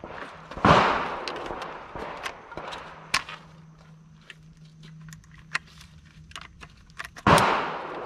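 Two gunshots, one about a second in and one near the end, each followed by an echoing tail. Between them come small scattered clicks of a rifle magazine being handled and fitted into the rifle.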